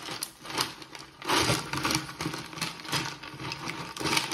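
Ice cubes clinking and grinding against each other and the stainless steel bucket as a champagne bottle is pushed down into the ice, with a louder burst of crunching about a second in.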